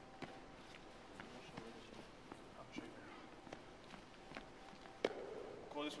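Footsteps on a hardwood gym floor, a scatter of irregular light knocks, with one sharper thump about five seconds in.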